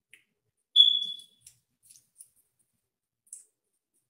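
A single short, high-pitched tone rings out about a second in and fades within half a second, followed by a few faint, sharp clicks.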